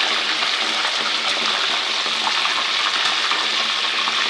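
Pieces of fish frying in hot ghee in a pan, a steady sizzle.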